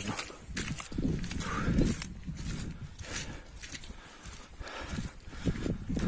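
Footsteps squelching through deep, wet mud at a walking pace.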